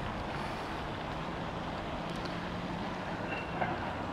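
Steady outdoor background noise with a faint continuous low hum, the kind of drone left by distant traffic, and a couple of small faint ticks near the end.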